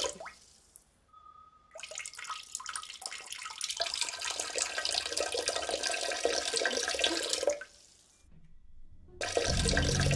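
A urine stream trickling into a toilet bowl. It starts about two seconds in, runs steadily and stops suddenly about three quarters of the way through, as she holds it to listen.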